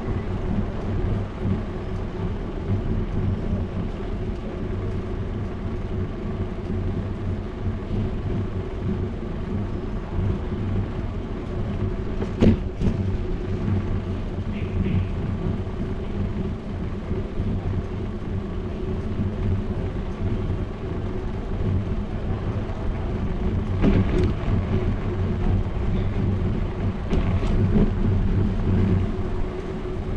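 Bicycle rolling over paved sidewalk tiles, a steady low rumble of tyres and vibration picked up by a bike-mounted action camera, with one sharp click about halfway through.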